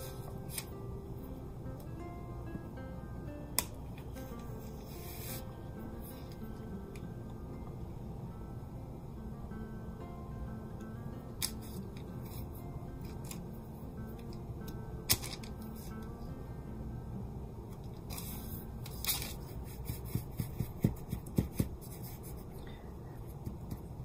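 Quiet background music, with scattered small clicks and taps as fingers press soft clay into a silicone mould; the clicks come more often near the end.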